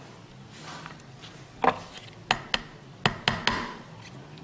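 About six sharp knocks and taps on a wooden dissecting board as pins are pressed into it to fix a fish's gill covers in place, the first about a second and a half in and the rest close together.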